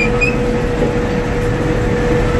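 Gleaner M2 combine running in a soybean field, heard from inside the cab: a steady mechanical rumble with a whine held at one pitch throughout.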